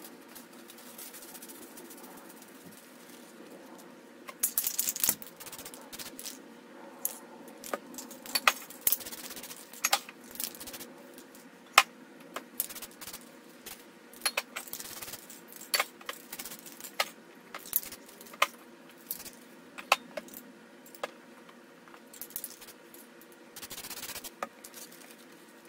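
Irregular sharp clicks and rattles of spray-paint work, from spray cans and a crumpled plastic bag being handled, over a steady low hum. A short hiss about four and a half seconds in, when the clicking starts.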